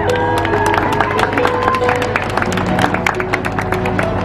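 Audience clapping and cheering, many irregular hand claps with a few voices calling out in the first second, over music in the background.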